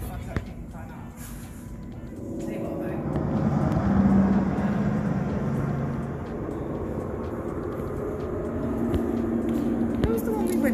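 Hall ambience: indistinct background voices over a steady low hum that grows louder a few seconds in.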